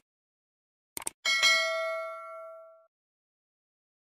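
Subscribe-button animation sound effect: two quick mouse clicks about a second in, then a bright notification-bell ding that rings out and fades over about a second and a half.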